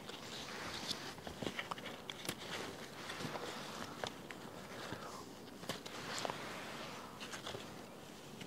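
Bean plants rustling, with scattered small clicks and snaps, as beans are picked by hand and a crow pulls at the leaves beside them.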